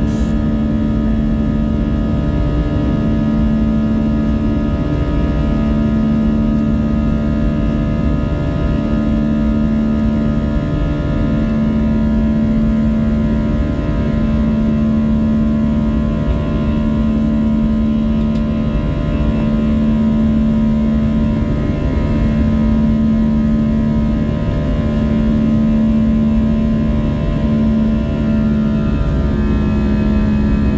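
Airbus A320 turbofan engines heard from inside the cabin during the climb after takeoff: a loud, steady rush with a layered whine and a low hum that swells and fades about every two and a half seconds. Near the end the whine drops slightly in pitch.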